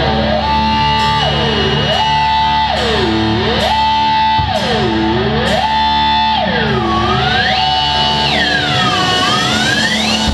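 Live heavy rock band playing loudly, led by distorted electric guitar: one note is swept down in pitch and back up again and again, about every second and a half, over a steady low drone. In the last few seconds the sweeps move higher.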